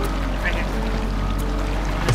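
Boat motor running steadily at trolling speed with a low, even hum, and water rushing along the hull.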